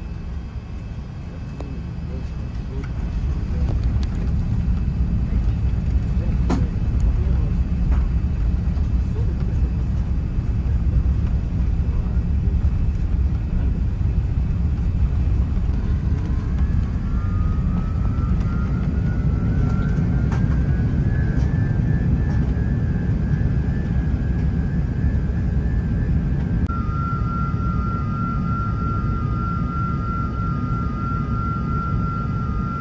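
Airbus A380 cabin during the takeoff roll: the engines at takeoff thrust and the runway rumble swell over the first few seconds and then hold steady. About halfway through, a whine rises in pitch and then levels off, and a steady tone comes in near the end.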